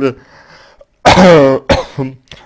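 A man coughs loudly about a second in, with a short second cough just after it.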